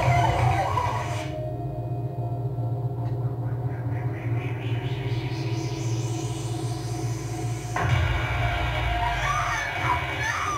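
Horror film trailer soundtrack playing back: a low, steady droning score with held tones, which turns abruptly fuller about eight seconds in.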